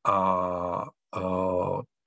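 A man's voice holding a long, steady filler vowel twice, each about a second, with a short break between: a drawn-out hesitation sound in the middle of a sentence.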